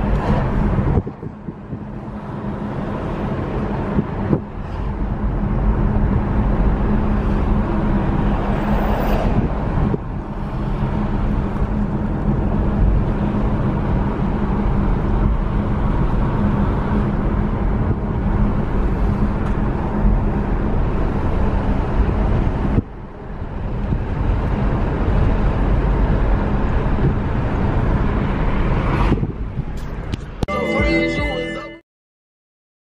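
Steady road and wind noise inside a moving car, with a low steady hum underneath. The noise dips briefly a few times, near the start and again about three-quarters of the way through.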